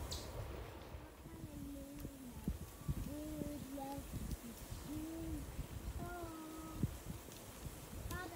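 Wind noise on the microphone of a moving bicycle. From about a second and a half in, a faint melody of short held notes that rise and fall a little, with gaps between them.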